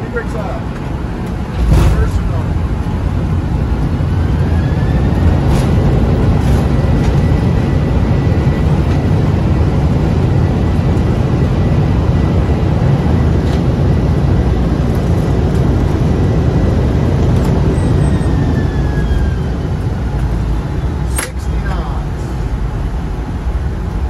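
Jet airliner's landing rollout heard from the cockpit. A thump about two seconds in comes as the noise jumps up into a loud, steady low rumble of engines in reverse thrust and wheels on the runway while the aircraft decelerates. The noise eases off in the last few seconds, with a sharp click just before.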